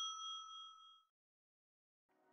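Ringing tail of a bell-like 'ding' sound effect for a notification bell, several clear tones fading out about a second in.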